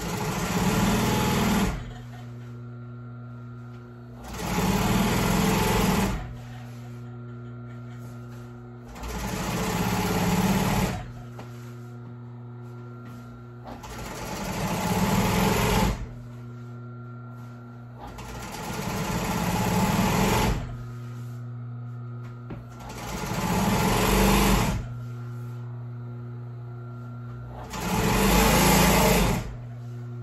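Industrial upholstery sewing machine stitching a stretcher strip onto a vinyl seat cover in seven short runs of about two seconds each, several speeding up as they go, with a steady hum underneath between runs.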